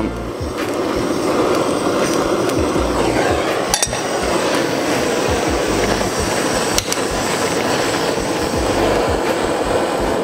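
Butane kitchen torch running with a steady hiss as it flames a sprig of rosemary to smoke a cocktail glass, with two light clicks about four and seven seconds in.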